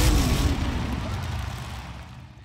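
Logo-sting sound effect: a car-engine-like rumble that falls in pitch and dies away over about two seconds.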